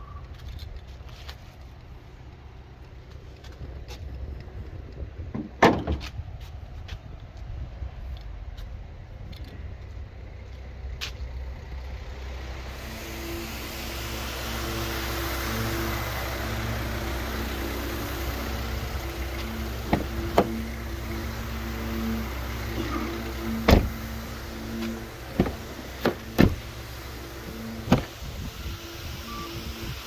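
A car engine running steadily, a low rumble that grows louder about halfway through. Several sharp knocks come over it in the second half.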